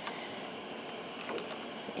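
Steady low hiss from a gas range with a skillet heating on it, with a few faint light clicks.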